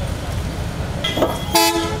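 Street traffic rumbling steadily, with a vehicle horn sounding once, a steady tone for about half a second near the end. The horn is the loudest sound.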